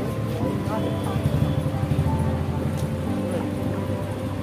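Busy street-market background: crowd chatter and vehicle noise, mixed with music, a little louder in the middle.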